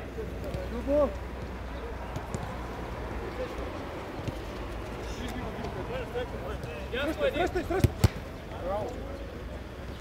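Players' voices calling out across an outdoor football pitch, then a single sharp thud of the ball being kicked about eight seconds in.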